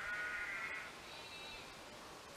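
A sheep bleating faintly: one bleat lasting most of a second, then a fainter, higher call just after.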